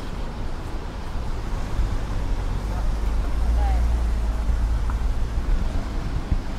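Road traffic: cars passing on the street, with a low rumble that swells about halfway through.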